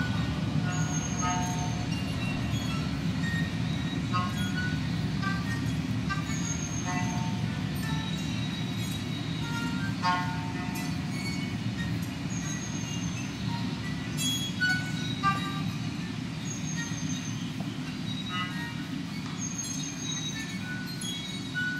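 Solo violin playing short, scattered high notes over a steady, dense low rumble, in a contemporary piece for violin with field recordings. A brief high falling whistle recurs every five or six seconds.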